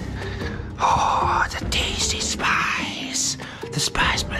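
A person's loud, breathy gasps and exhales, a few in a row, over background music.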